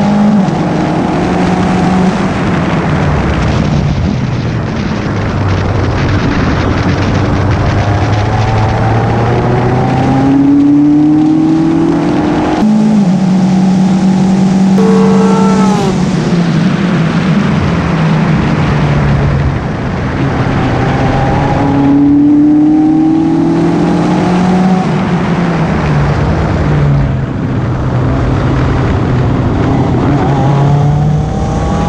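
Formula 3 race car engine at high revs on track, its pitch climbing through each gear and stepping down at every shift, over heavy wind noise on the onboard camera. Around the middle the engine note sweeps down in pitch as the car passes by.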